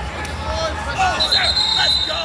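Several voices from spectators and coaches shouting across a wrestling mat in an echoing arena, with a few knocks. About a second in, a steady high tone like a whistle starts and holds for over a second.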